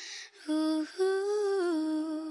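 A girl's unaccompanied voice humming the closing notes of a worship song: a short note, then a longer note that falls in pitch.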